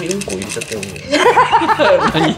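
A man speaking, then laughter breaking out about a second in, a quick run of repeated 'ha-ha-ha' bursts.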